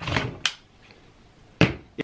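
Plastic scrape and click as the removable battery of an Asus laptop is unlatched and slid out of its bay, followed about a second later by one more sharp knock.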